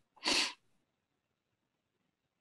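A single short, breathy puff of air from a person, lasting about a third of a second, a quarter second in; near silence after.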